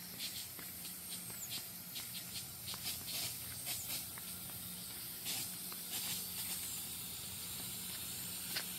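Pop-up lawn sprinkler spray heads watering, a steady hiss of spray with a fine flickering spatter of water as the second zone runs.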